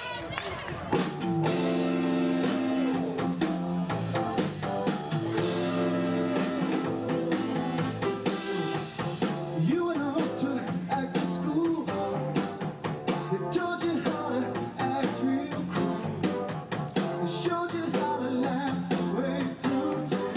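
Live rock band starting a song about a second in: electric guitars, bass, keyboard and drum kit playing together.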